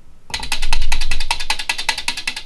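The relays of a single-board relay computer clicking rapidly, about a dozen clicks a second, as the machine runs its built-in demo program. The clicking starts about a third of a second in and is loudest at first.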